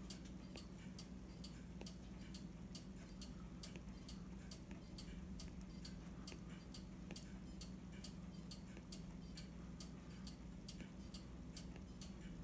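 Faint light ticking, fairly even at about two to three ticks a second, over a low steady hum.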